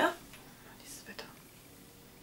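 A woman says a short "ja", followed by a quiet stretch with only a few faint breathy whispers and soft clicks.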